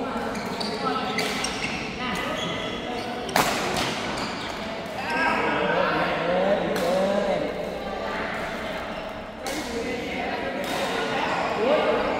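Badminton rally in a large echoing hall: several sharp racket hits on the shuttlecock, the loudest about three and a half seconds in, with players' voices calling over the play.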